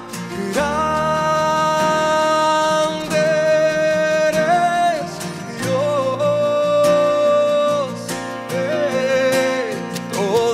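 Live worship band: a man singing long held notes over strummed acoustic guitar, keyboard and drums. The voice holds three long notes, each lasting one to three seconds.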